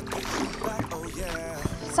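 Swimming-pool water sloshing and lapping around a body floating and moving in it, with soft background music underneath.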